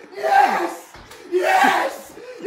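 A person yelling in excited celebration: two loud, wordless shouts, each about half a second long.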